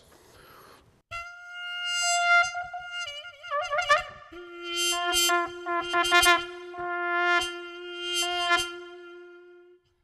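Mutantrumpet 4.0, a three-belled electro-acoustic trumpet, playing held notes whose tone colour changes as it is switched between its bells with an extra set of valves. From about four seconds in, a steady lower tone is held beneath a run of shorter, higher notes.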